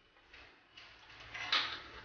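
Stainless-steel idli plates being fitted onto the steamer stand's central stem and stacked: a few light clinks and scrapes of metal on metal, the loudest about one and a half seconds in.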